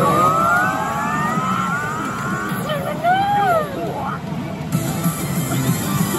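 Pachislot machine sound effects: a long rising electronic tone for about two and a half seconds, then a brief shouted voice line from the machine about three seconds in, over the machine's background music.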